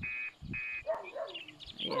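Two short, high animal calls about half a second apart, followed by faint bird chirps.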